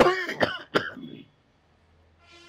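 A man clearing his throat, three quick times in the first second.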